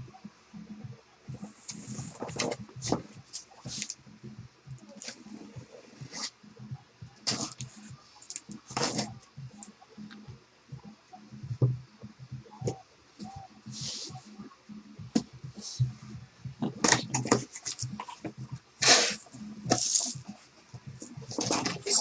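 A cardboard shipping case being opened by hand: a box cutter slitting the packing tape, then the cardboard flaps scraping and rustling as they are pulled open, in irregular short bursts.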